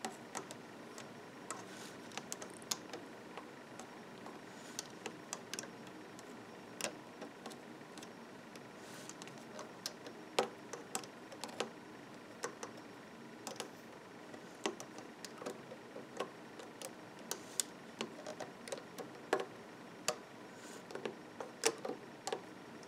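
Faint, irregular small clicks and taps of a metal-tipped loom hook against the clear plastic pegs of a Rainbow Loom as rubber bands are lifted and pulled over.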